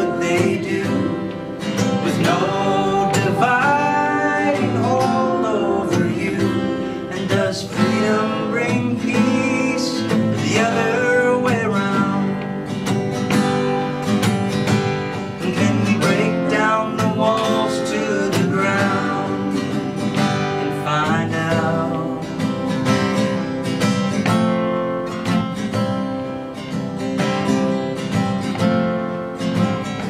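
A steel-string acoustic guitar strummed under a man singing the chorus of a folk song.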